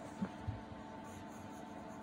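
A pencil writing faintly on notebook paper, with a couple of small knocks in the first half-second.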